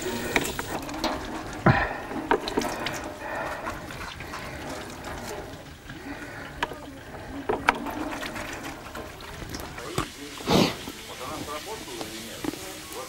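Indistinct voices from a television news broadcast in a small room, with scattered clicks and knocks from objects being handled and a louder thump about ten and a half seconds in.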